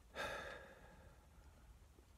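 A man's short sigh, a breath let out through the mouth lasting about half a second just after the start and fading away. A faint low rumble goes on under it.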